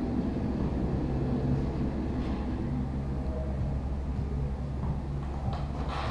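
Steady low hum of background noise.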